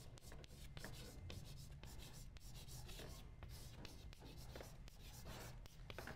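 Chalk writing on a blackboard: a faint run of short scratching strokes.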